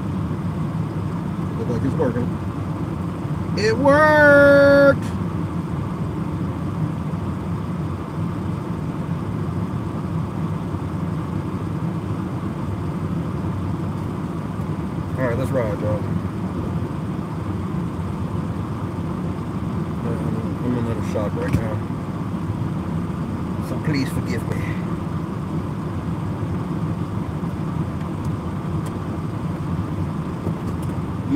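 Steady low road and engine rumble inside a moving car's cabin. About four seconds in, a loud held tone rises briefly in pitch and then stays level for about a second.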